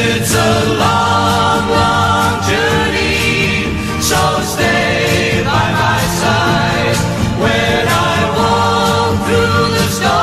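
1960s folk-pop group singing: a clear female lead voice on long held notes, blended with group harmony voices, over a light band backing that includes a double bass.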